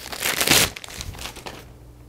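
Wrapping crinkling and rustling as a book is unwrapped by hand, loudest in the first half-second or so, then a few lighter rustles and clicks.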